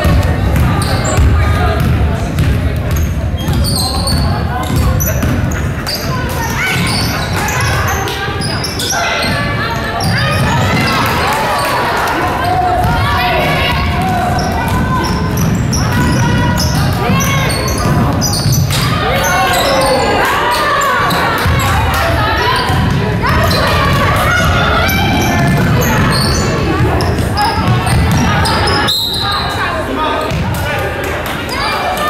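Basketball dribbled and bouncing on a hardwood gym floor during play, with players and coaches calling out, all echoing in a large gym.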